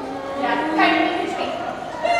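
Children's voices making long, drawn-out vocal sounds as they act out an emotion: a lower voice held for about a second, with a higher voice joining and overlapping it partway through.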